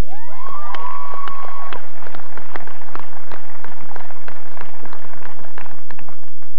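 Audience clapping after a graduate's name is read, with several voices whooping in the first couple of seconds. The clapping thins out near the end.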